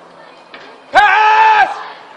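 A person's loud held shout: one sustained high call lasting under a second, starting about a second in.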